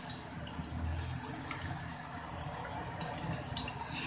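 Ginger and green-chilli paste sizzling steadily in hot cooking oil in a stainless steel kadai.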